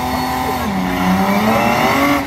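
Two drag cars' engines, a Holden ute's L67 supercharged V6 and a Nissan Silvia S15, revving hard at the start line. The revs are held high, dip about halfway through and climb again near the end.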